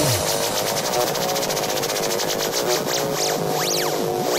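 Electronic dance music from a DJ mix: a pulsing synth riff over a fast, even run of high ticks, with no deep bass or kick drum. A rising-then-falling sweep comes near the end.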